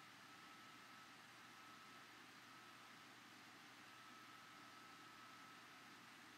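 Near silence: a steady faint hiss of room tone, with a thin high tone running under it.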